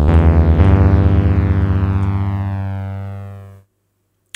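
Synth lead from BandLab's 'Tape Saw' preset, played from the computer keyboard: one note, then a new note about half a second in, held with a bright, buzzy tone full of overtones and slowly fading. It cuts off about three and a half seconds in.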